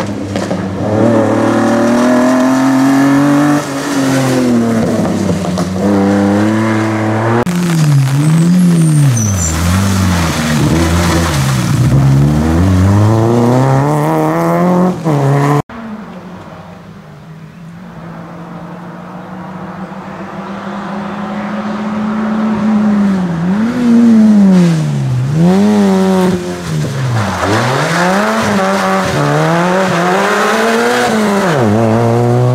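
Two rally cars driven hard on a stage, one after the other. First a Citroën SM's V6 engine revs high, its note rising and falling repeatedly through gear changes and lifts. Then, after an abrupt cut, a Citroën Saxo rally car's engine approaches from a distance, growing louder while revving up and down through the gears.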